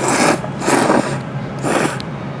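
Three loud slurps of miso ramen noodles sucked into the mouth, each under half a second: one at the start, one about a second in, and a shorter one near the end.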